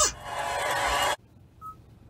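Radio broadcast through a car stereo: a sustained sound rings on for about a second, then cuts off abruptly to near silence. One short high beep follows a little past halfway.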